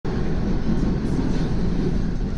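Toronto subway train running through a tunnel: a steady, loud low rumble.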